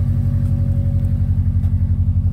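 Subaru Impreza WRX STI's turbocharged flat-four engine idling, a steady low pulsing rumble.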